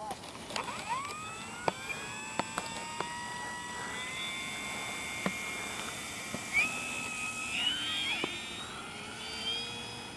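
Electric motor and propeller of an FMS P-47 Razorback RC warbird, run on a six-cell LiPo pack, whining up in pitch as the throttle opens for the takeoff roll. It then holds a steady whine whose pitch shifts about seven to eight seconds in as the plane runs past. A few sharp clicks are heard along the way.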